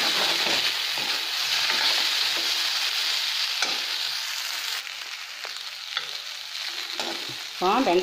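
Sliced okra sizzling in oil in a kadai, stirred with a metal spoon that scrapes and clicks against the pan now and then. The sizzle eases off about five seconds in.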